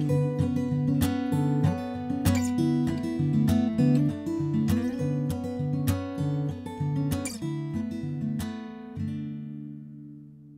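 Acoustic guitar playing a song's closing instrumental bars, picked notes over a bass line, getting softer toward the end; a final chord is struck about nine seconds in and left to ring out.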